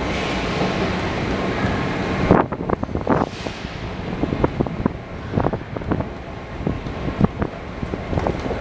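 Metro station escalator running during a ride down it: a steady rumbling hiss that drops away suddenly after about two seconds, then a string of irregular clicks and knocks.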